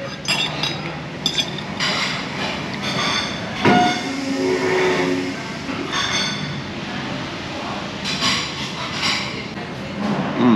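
A metal spoon clinks against a plate and bowl a few times as food is eaten, over a steady rumble of background noise.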